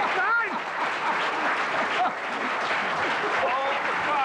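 Studio audience applauding, a dense, steady clatter of clapping with voices calling out over it.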